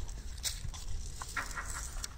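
Vinyl overlay strip being peeled off its backing paper by hand: a few faint, scattered crackles and ticks over a low steady rumble.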